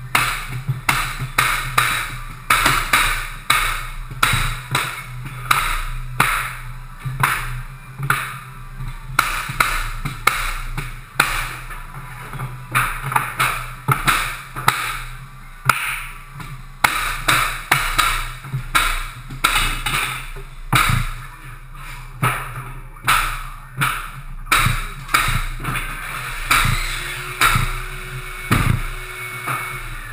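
Pneumatic flooring nailers being struck with mallets as hardwood floorboards are nailed down: repeated sharp metallic bangs, about one or two a second, throughout.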